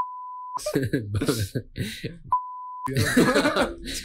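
Two censor bleeps, each a steady half-second tone, one at the start and one just past two seconds in, laid over a bleeped-out remark. Laughter runs between and after them.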